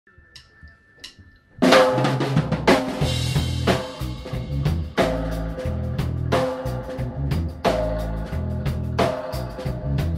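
Dub reggae band with drum kit, deep bass line and keyboard chords, coming in loud about a second and a half in after a quiet start. The drum hits land at a steady, unhurried pace over a heavy, sustained bass.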